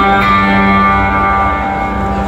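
Guitar picking a clean, slow arpeggio, its notes ringing into one another, played live through a stadium sound system.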